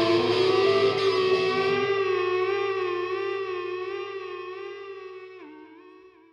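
The closing held note of a rock song, with a slow vibrato, fading out. The low instruments drop away about two seconds in, and the pitch dips briefly near the end.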